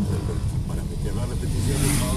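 Car engine and road noise heard from inside the cabin while driving: a steady low rumble, with a rush of hiss building near the end.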